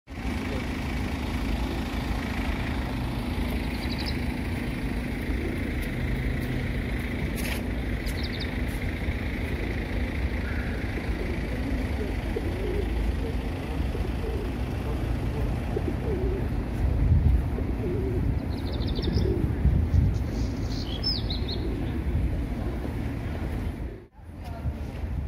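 City street ambience: a steady rumble of traffic, with small birds chirping briefly about four and eight seconds in and again in a short cluster near the end.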